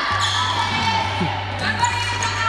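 A futsal ball being dribbled, knocking and bouncing on a hard indoor court floor, over background music and children's voices.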